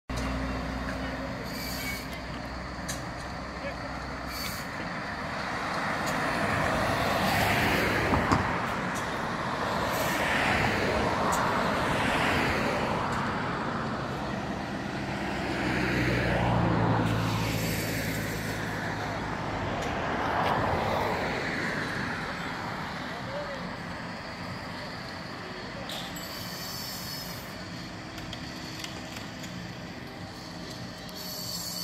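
Road traffic passing close by: several vehicles, trucks among them, go past one after another, each swelling and fading away, with a truck engine's low drone about halfway through.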